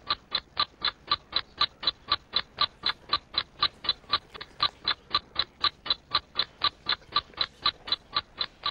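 Countdown-clock ticking sound effect: sharp, even, high ticks about four a second, running while the team's answer time counts down.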